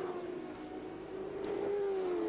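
Racing motorcycle engines on track, heard as a steady high-pitched engine note that dips slightly and then rises again.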